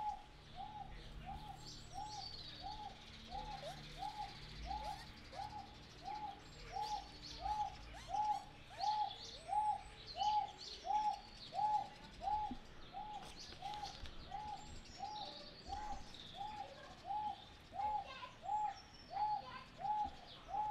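A wonga pigeon calling: a single short coo repeated monotonously at an even pace, about three notes every two seconds, with faint chirps of other birds in the background.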